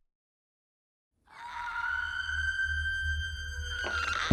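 Dead silence for about a second, then a sustained, eerie drone swells in: a few held high tones over a deep low rumble, steady in pitch. It is horror-trailer sound design or score.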